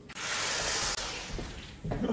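Carbonated Sprite hissing from a plastic soda bottle, a fizzing hiss that starts sharply and fades away within about two seconds.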